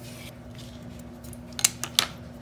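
Knife blade drawn through thin rolled fondant along a wooden ruler on a plastic cutting mat, a soft scraping hiss. Then three sharp clicks in the last half second, the first the loudest, as the ruler is lifted off the mat.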